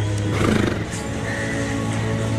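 Soft sustained background music with a horse neighing briefly, its pitch falling, about half a second in.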